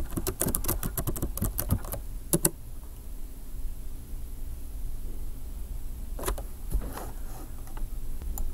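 Typing on a computer keyboard: a quick run of keystrokes for about two seconds, a couple more shortly after, then a few more keystrokes later on.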